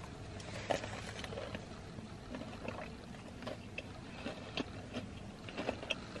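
Two people chewing fresh bites of crispy fried chicken sandwiches, with scattered small crunches and mouth clicks over a low steady hum.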